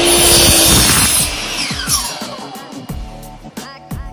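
DeWalt 12-inch miter saw cutting through a wooden block, then switched off about a second in, its motor winding down with a falling whine. Background music with a steady beat plays throughout.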